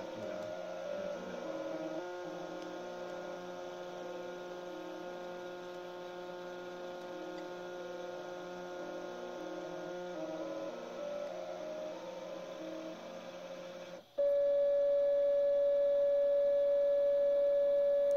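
Stepper motors of a CNC hot-wire foam cutter whining as they drive the wire through a foam block, their pitch changing in steps as the axis speeds change. About 14 seconds in the sound changes suddenly to one louder steady tone.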